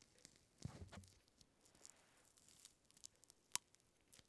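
Very faint squeezing of a lime wedge into the neck of a beer bottle, soft wet crackles close to near silence, with one sharp click about three and a half seconds in.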